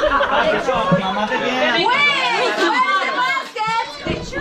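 Chatter of a room full of children and adults talking over one another, with high children's voices calling out in the middle.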